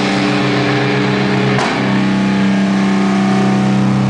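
Distorted electric guitar through an amplifier, holding a droning chord that is struck again about a second and a half in.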